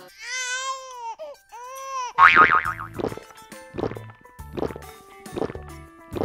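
Cartoon baby-crying sound effect: two wavering wails in the first two seconds. It is followed about two seconds in by a loud, falling sound effect, the loudest thing heard, and then children's background music with a beat about every 0.8 seconds.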